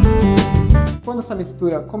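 Background music of a strummed acoustic guitar that stops about a second in, followed by a man's voice speaking.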